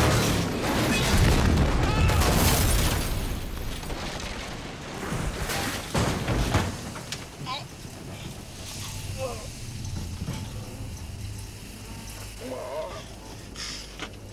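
Muscle car crash-landing on a yacht's deck in film sound effects: a loud crash of impacts and flying debris over the first few seconds, another heavy hit about six seconds in, then the sound dies down.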